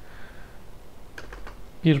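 A few light clicks of a computer keyboard, starting a little over a second in.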